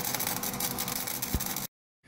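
Wire-feed arc welding on steel plate from a small Lincoln Electric welder: a steady, rapid crackle of the arc that cuts off suddenly near the end.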